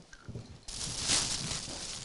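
Thin plastic carrier bag rustling and crinkling as a child's hands rummage through the sweets inside it, starting suddenly a little way in and loudest about a second in.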